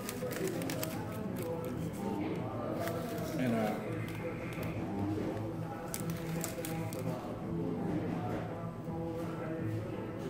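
Restaurant dining-room ambience: background chatter of other diners with music playing. A few light clicks and rustles come from food and its paper liner being handled at the table.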